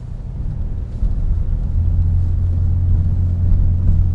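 Car engine pulling up a steep hill, heard from inside the cabin as a low steady drone with road rumble. It grows louder about a second in as the car accelerates on the climb.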